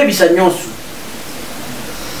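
A man's voice for about half a second, then an even, steady hiss for the rest of the time.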